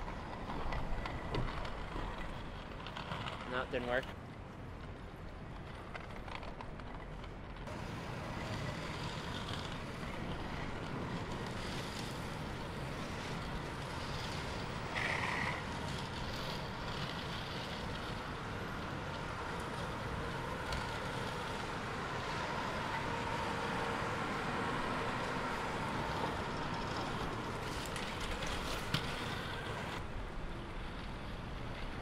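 Steady city street noise of traffic, with indistinct voices in the first few seconds and a short high squeak about fifteen seconds in.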